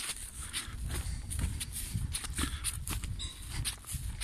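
Footsteps rustling and crunching through dry, dead meadow grass at a walking pace, with a low rumble of wind or handling noise on the microphone.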